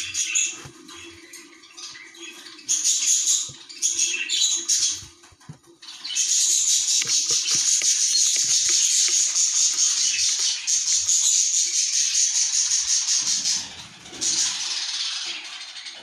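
Young budgerigar chick calling: several short spells of high, rapid chattering in the first five seconds, then one long, steady, rapidly pulsing buzzy call of about seven seconds, and another short spell near the end.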